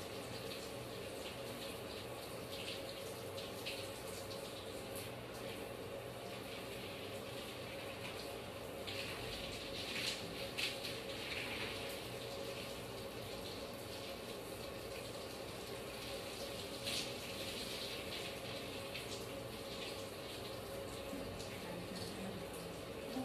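Water running steadily from a bathtub faucet into the tub, with a few short louder moments around the middle.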